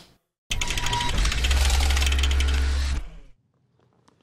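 Logo-bumper sound effect: a rapid mechanical ratcheting clatter over a deep bass boom, starting about half a second in, lasting about two and a half seconds and then fading out.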